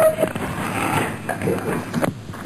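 Muffled background noise coming down a telephone line while the call is on hold, with faint, indistinct voices in the distance.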